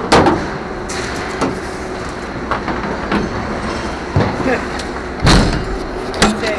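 Junk being thrown out of a metal-sided trailer at a dump: a string of irregular bangs and clatters, the loudest a heavy thud about five seconds in, over a steady background rumble.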